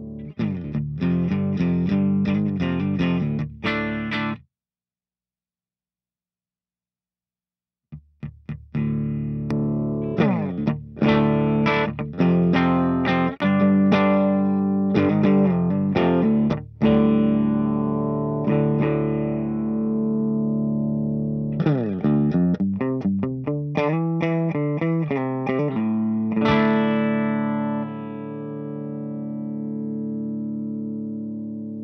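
Electric guitar played through a Mesa/Boogie Single Rectifier Rectoverb 50 tube amp on its clean channel: picked chords and notes, then a dead-silent gap of about four seconds, then more chord playing with the channel in its pushed mode, ending on a chord left to ring out.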